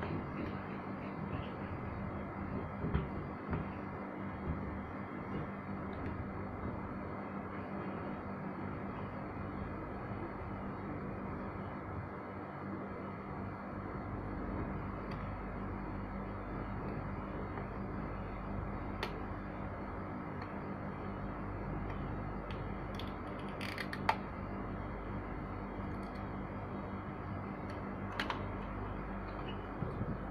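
Hot-air rework station blowing steadily onto a board-mounted memory chip to melt its solder, with a faint low hum under the airflow. A few light ticks come late on as tweezers work at the chip.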